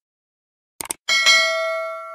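Subscribe-button animation sound effect: a quick double mouse click just under a second in, then a bright notification-bell ding that rings on and slowly fades.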